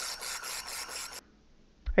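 Hand-held wire-fed laser welder running a bead on 0.080-inch stainless steel in scale (wobble) mode: a raspy hiss and crackle with a quick, even pulse. It cuts off suddenly about a second in.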